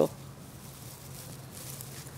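Faint rustling of dry grass as fingers push a smouldering ember into a loose bundle of dry grass tinder.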